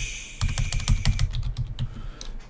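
Typing on a computer keyboard: a quick run of keystroke clicks that thins out near the end.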